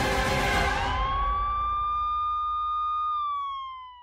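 A produced transition sound effect: a sudden noisy whoosh-hit that dies away over about two seconds, under which a single siren-like tone swells up, holds steady, then glides slightly down and fades out near the end.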